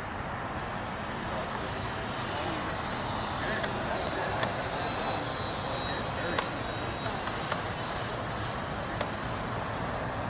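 Freewing F-22 model jet's twin electric ducted fans in flight: a steady rushing noise with a faint high whine that drifts slowly in pitch, swelling a little in the middle. A few sharp clicks sound over it.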